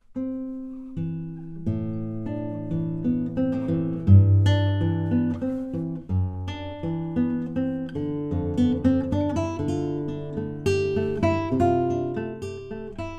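Handmade nylon-string classical guitar with a solid Caucasian spruce top and solid American walnut back and sides, played fingerstyle as a solo: plucked melody notes over a deep bass line. It starts straight after a moment of silence.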